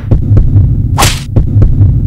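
Trailer sound design: a low, repeated throbbing pulse with a sharp whoosh about a second in.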